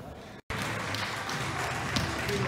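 After a sudden cut, the even background noise of a football stadium during a warm-up, with a low rumble building, and a single sharp thud near the end.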